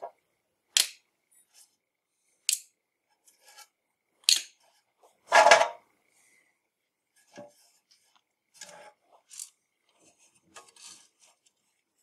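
Small steel screws and nuts clinking into a round steel magnetic parts tray: a few sharp metallic clicks a couple of seconds apart, a longer rattle about halfway through, then fainter ticks of parts being handled.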